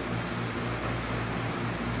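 Steady low hum and whirr of cooling fans from a running PC test bench, with no clicks or changes.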